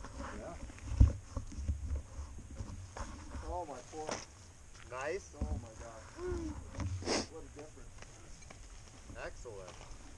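Faint talk of riders standing nearby, with gloved hands rustling and bumping against the helmet and its camera. There is a sharp knock about a second in and another near the seventh second.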